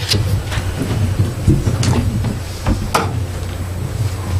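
Room noise through the meeting's microphones: a steady low hum with light rustling and a few short clicks and knocks.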